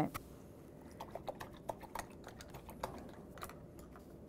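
A paintbrush being rinsed in a ridged plastic brush basin: a run of light, irregular clicks and taps of the brush against the plastic.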